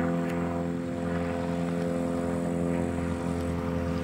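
Light single-engine propeller airplane's piston engine running at low power, a steady drone, as the plane touches down on landing.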